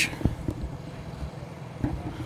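Outdoor background noise: a low rumble with a few soft, low thumps and a faint hiss.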